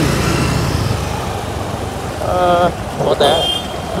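Scooter engine running under way, with wind and road noise on the microphone while riding.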